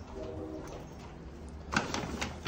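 Paper and plastic delivery bags rustling as they are carried and set down, with a sharp rustle near the end. A brief low hum comes near the start.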